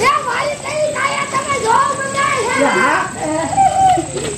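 Several voices calling out and talking over one another excitedly, some calls drawn out, over a faint hiss of burning fountain fireworks and sparklers.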